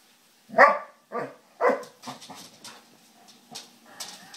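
Basset hound barking three times in play, short loud barks in quick succession, the first the loudest.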